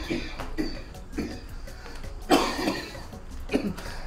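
A person coughing several short times, the loudest cough about two and a half seconds in, over faint background music.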